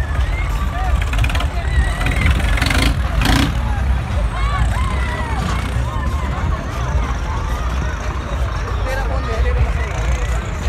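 Tractor engines working hard in a tractor tug-of-war pull, a steady low rumble under heavy load, with crowd voices shouting over it.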